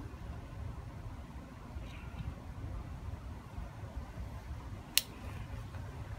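Low, steady rumble of road-paving machinery, with a single sharp click about five seconds in.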